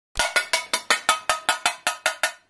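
A fast, even run of bright percussive strikes, about five or six a second, each ringing briefly before the next, like a cowbell or similar struck percussion.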